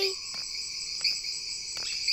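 Crickets chirring steadily in a high, even trill.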